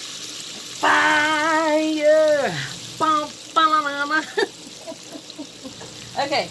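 Garlic and lemon juice sizzling softly in melted butter in an Instant Pot's stainless inner pot on sauté. About a second in, a woman's voice sings one long, wavering note that slides down at its end, followed by a few shorter sung notes.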